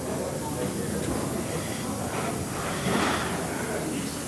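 A standing GWR Castle class 4-6-0 steam locomotive giving off a steady hiss of steam, with faint voices in the background.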